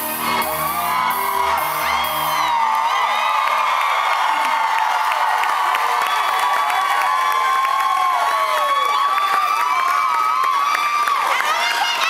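The band's last notes of a song end about two seconds in. A concert crowd then cheers and screams, with many high whoops.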